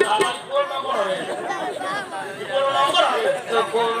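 Men's voices talking over one another in quick back-and-forth chatter.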